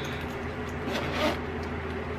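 Zipper of a fabric laptop sleeve being pulled along to zip it closed over a laptop, a soft scratchy run with a slight swell about a second in.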